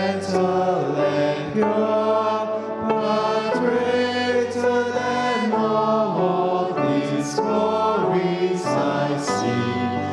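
A small group of worship singers singing a hymn together with piano accompaniment, slow and sustained, at a steady level.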